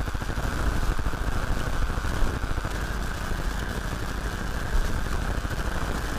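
Steady background rumble and hiss with no speech, even throughout with no distinct events.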